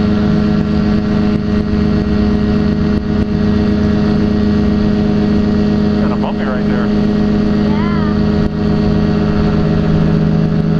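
Quad City Challenger ultralight's Rotax two-stroke engine and propeller running steadily at low power while the aircraft taxis on the runway.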